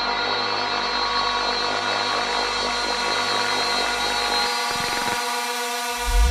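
Techno DJ mix in a breakdown: a sustained synthesizer chord with many overtones over a pulsing bass line. The bass drops out about three-quarters of the way through, leaving the synth chord on its own.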